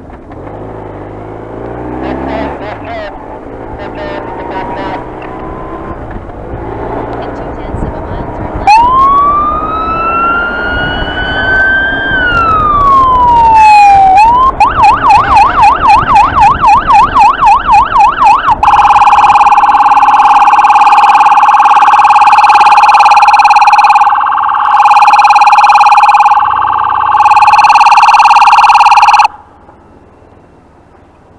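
Electronic siren on a BMW R1150RT-P police motorcycle, heard over engine and wind rumble. About nine seconds in it gives one wail that rises, holds and falls. It then switches to a fast yelp of about four sweeps a second, followed by a loud steady blaring tone broken twice, which cuts off suddenly near the end.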